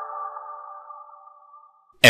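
Closing chord of a logo intro jingle: a few held electronic tones ringing on and fading out over about two seconds.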